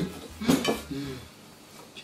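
A plate of tomatoes knocked against the table with one clink about half a second in, then faint handling sounds as a tomato is picked off it.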